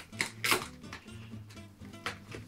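Cardboard box being pulled open by hand: two sharp ripping rustles close together near the start, then quieter handling. Background music with a steady bass line plays throughout.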